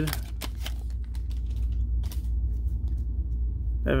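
Clear plastic cellophane wrapper of a trading-card pack crinkling and the cards inside being handled. The sound is a scatter of short crackles, thickest in the first second and a half, over a steady low rumble.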